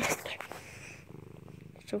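Domestic cat purring steadily and close to the microphone. A brief burst of noise comes right at the start.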